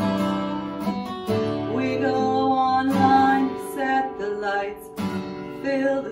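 Acoustic guitar strummed as song accompaniment, with new chords struck every second or two.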